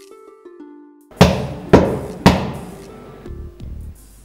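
Three loud knocks on a wooden door, about half a second apart, each trailing off, over soft background music.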